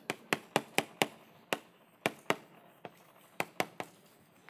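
Chalk tapping on a chalkboard as characters are written: about a dozen short, sharp clicks at an uneven pace, one for each stroke.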